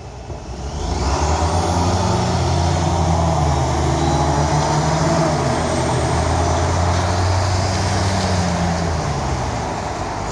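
Chevrolet Corvette C7 Stingray's 6.2-litre V8 accelerating hard from a standstill. Its exhaust comes up loud about a second in, holds strong for several seconds, and eases a little near the end.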